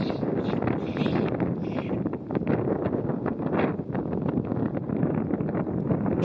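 Wind buffeting the microphone outdoors: an uneven rushing noise with many short crackles, heaviest in the deep range.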